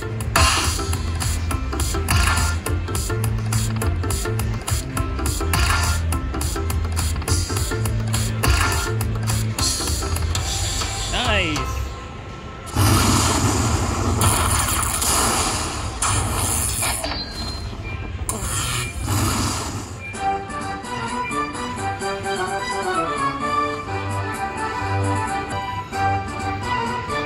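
Aristocrat Lightning Cash Magic Pearl slot machine sound effects during a free-spin bonus: a pulsing bass beat with clicks while the reels spin. About halfway there is a short dip, then loud noisy effect bursts as the winner screen shows. From about 20 s a melodic tune steps up and down while the win credits count up.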